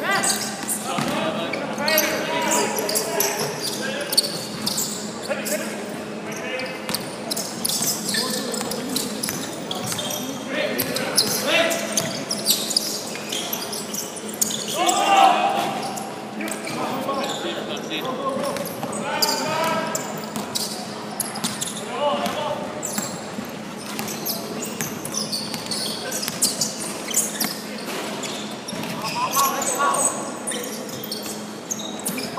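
Indoor basketball game: a ball repeatedly bouncing on a wooden court amid short sharp knocks and thuds of play, with players' scattered shouts, all echoing in a large sports hall.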